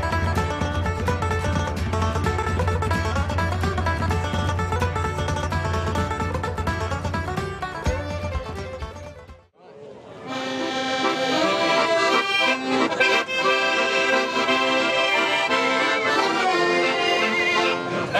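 Background music with a steady low beat, which breaks off about halfway. After it, accordions play a traditional tune.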